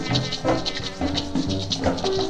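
Instrumental passage of a swing band record played to a rumba rhythm: maracas shake about four times a second over bass and rhythm section.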